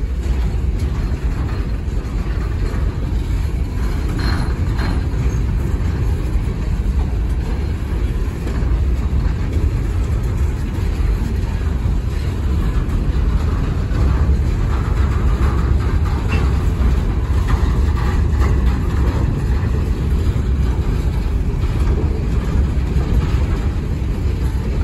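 Empty coal hopper cars rolling past on the rails: a loud, steady rumble of steel wheels on track with a few faint knocks.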